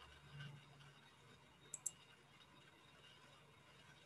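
Near-silent room tone with two quick, sharp clicks close together a little under two seconds in.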